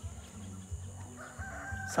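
A rooster crowing faintly, one held call starting a little past the middle.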